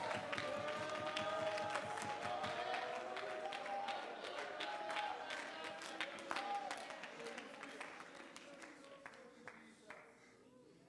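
A worshipping congregation clapping, with many voices calling out in praise, faint under the room's quiet. The sound thins out and dies away over the last few seconds.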